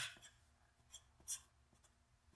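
A marker writing: a few faint, short scratching strokes, the loudest a little over a second in.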